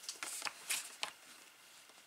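A plastic bone folder scraped along the fold of heavy kraft cardstock in a few short strokes, pressing the flap crease flat; the strokes die away after about a second.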